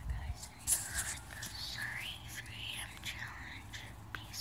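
A person whispering close to a phone microphone, with a few short handling clicks.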